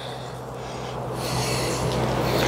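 Honeybees humming steadily around an opened hive, with rubbing and scraping growing louder as a wooden brood frame is worked loose and lifted out of the box.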